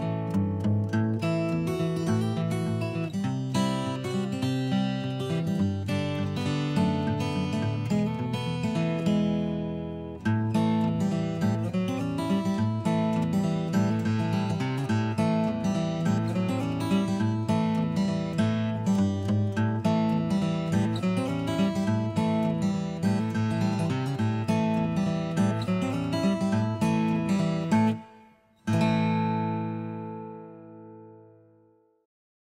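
Background music: strummed acoustic guitar, breaking off briefly near the end before a last chord rings out and fades.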